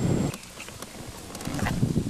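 Low rumble of car cabin noise that cuts off abruptly a fraction of a second in. After a quieter stretch, wind on the microphone and a few handling knocks build up.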